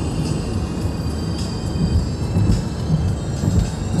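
Steady road and engine rumble of a car cruising at highway speed, heard from inside the cabin.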